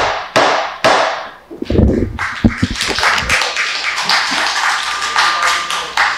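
Wooden gavel struck three times on the desk within the first second, marking the ordinance's approval, followed by a room of people applauding for about four seconds.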